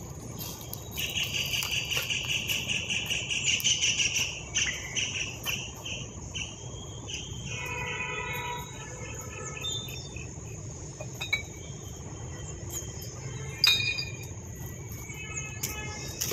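Insects chirring in a rapid pulsing trill, loudest between about one and four seconds in, over a steady low background. A short pitched call comes near the middle, and a few light clicks come later.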